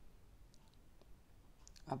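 Quiet room tone with a few faint, scattered clicks; a man's voice begins right at the end.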